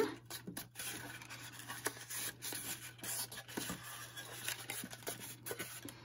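Cardboard of a small kraft mini shipping box being folded by hand along its score lines: faint rubbing and scratching of card with scattered small clicks and taps.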